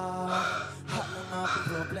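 A woman gasps over an R&B-style song in which a male voice holds long notes.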